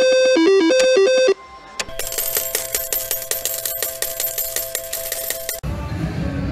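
A short synthesized jingle ends about a second in. Then a Fu Dai Lian Lian slot machine plays its rapid, ringing win sound over a steady tone for about four seconds, marking the jackpot feature won. It cuts off suddenly, leaving a low background rumble.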